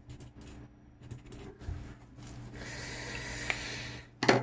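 Pen writing on notepad paper: faint scratches of the strokes in the first second or so, then a soft, steady hiss of rubbing near the end.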